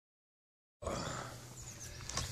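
Outdoor background sound: a steady low rumble with a few faint high chirps, starting just under a second in.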